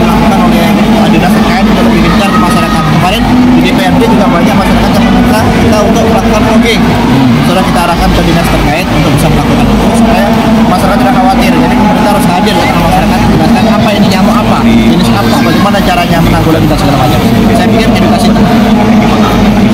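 A man speaking over a loud, steady low drone.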